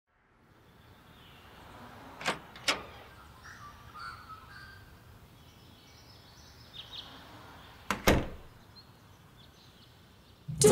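Quiet room ambience with a glazed door being opened and shut: two sharp knocks of its latch and frame about two seconds in, and another close pair about eight seconds in.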